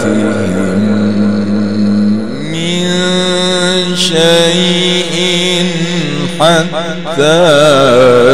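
A Qur'an reciter's voice chanting in the drawn-out melodic mujawwad style through a microphone. He holds one long note that steps up about two seconds in and carries on for several seconds, then breaks into quick quavering turns near the end.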